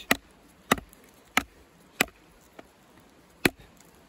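Wooden baton striking the spine of a small ESEE CR 2.5 knife to drive it through a fresh branch on a stump: five sharp knocks, the first four about two-thirds of a second apart, then a longer pause before the last.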